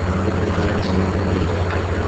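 A steady low hum with constant hiss over it, unchanging noise picked up by the recording microphone.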